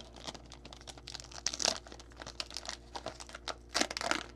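Foil wrapper of a 2020 Topps Chrome Sapphire baseball card pack crinkling as it is torn open by hand, with irregular crackles, the loudest about a second and a half in and near the end.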